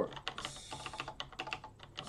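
Computer keyboard typing: a quick, uneven run of keystrokes as a command is typed letter by letter.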